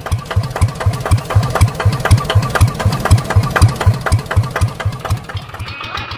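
Single-cylinder diesel engine of a two-wheeled hand tractor running steadily, its exhaust beating about five times a second.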